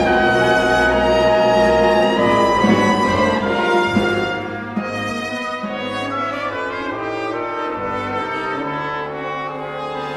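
Symphony orchestra playing twentieth-century classical music, with brass prominent. It is loud for the first four seconds or so, then drops to a softer level for the rest.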